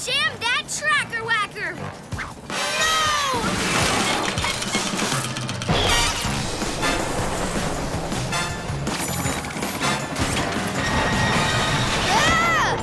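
Cartoon action soundtrack: fast music under crash and clatter sound effects, with a big smash about halfway through as the runaway train's track machine is jammed.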